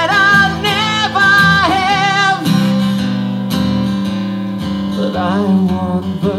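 Male voice singing a long held note with vibrato over a strummed acoustic guitar (Gibson Southern Jumbo). The voice drops out about two and a half seconds in, leaving the guitar strumming, and comes back briefly near the end.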